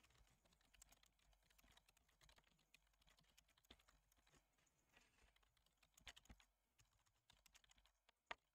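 Faint typing on a computer keyboard: a run of quick, irregular keystroke clicks as a sentence is typed.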